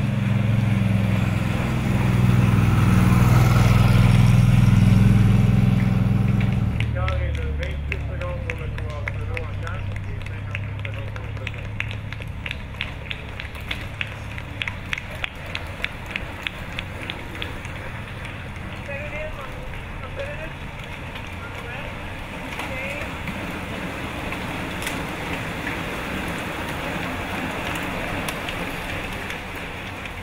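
A motor vehicle's engine runs loud as it passes in the first six seconds or so. Then a bunch of racing bicycles goes by with rapid clicking, and voices can be heard at the roadside.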